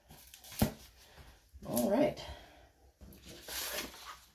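A book being handled on a laminate countertop: a sharp knock about half a second in, then a papery sliding rustle near the end as the hardback is set down. A brief murmur from a voice comes in the middle.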